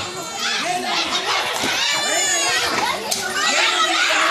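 A crowd of people shouting and screaming over one another, with many high-pitched voices, during a street brawl.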